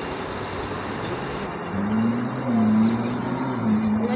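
Steady wind and distant city traffic noise in the open air. From just before halfway a low hum with a gently wavering pitch sets in and is the loudest sound until near the end.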